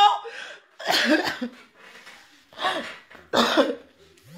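A person coughs three times: short, harsh coughs about a second apart.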